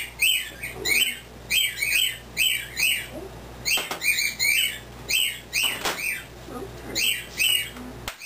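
Pet birds indoors chirping and squawking over and over, short sharp calls about two a second with a few brief pauses.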